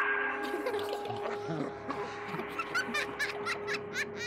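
An animatronic crawling-girl Halloween prop plays its scary sound sequence. A steady low drone runs under short clicks and a child's giggling chirps, which grow busier in the second half.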